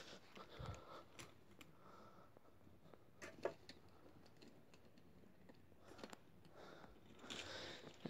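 Near silence: room tone with a few faint clicks and taps, the sharpest about three and a half seconds in.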